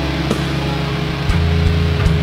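Metalcore band playing live: distorted electric guitars and bass hold low sustained notes, shifting pitch partway through, with a few drum hits.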